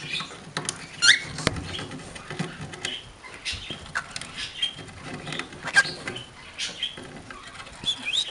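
Small pet parrots, a budgie and a cockatiel, making short high chirps and squeaks, a few of them quick rising calls, mixed with scattered sharp clicks.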